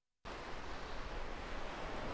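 Steady hiss of surf breaking on a beach, mixed with wind on the microphone. The sound cuts out completely for a moment at the very start.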